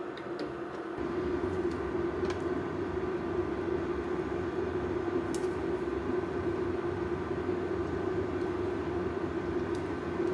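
Steady rumbling hum from the kitchen stove with the pan of broth on it, stepping up about a second in and holding steady, with a few faint light clicks on top.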